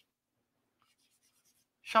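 Faint scratching of chalk on a blackboard as small circles are drawn and shaded in, then a man's voice starts near the end.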